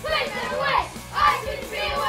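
A group of children's voices calling out together in unison, one short shout about every half second, in time with a warm-up drill, over background music.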